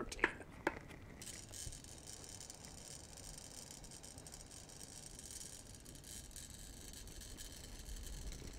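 A long, slow, deep inhalation through an incentive spirometer's mouthpiece, heard as a faint, steady airy hiss that begins about a second in, after a couple of small clicks. It is a maximal breath taken after fully exhaling, drawing the spirometer's piston up to its 4,000 mL top.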